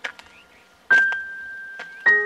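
A single bright chime note struck about a second in, ringing on and slowly fading, with a few soft clicks around it. It is the first note of light keyboard-style background music.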